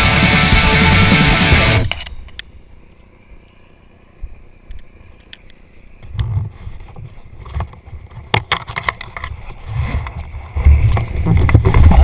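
Heavy rock music that cuts off suddenly about two seconds in. Then a quiet stretch, and from about six seconds a low rumble of wind buffeting the camera microphone, with a few clicks and knocks, as the parachutist comes in low over the grass to land.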